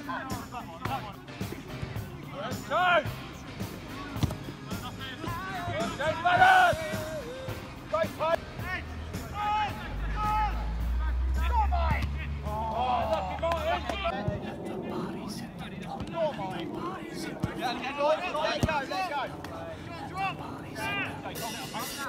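Shouts of footballers and touchline spectators carrying across an open grass pitch during play, with a few sharp knocks of the ball being kicked. A low rumble runs for several seconds around the middle.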